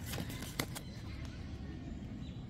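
Trading cards being handled and flipped over in a stack, with a few faint clicks of card stock, over a steady low hum.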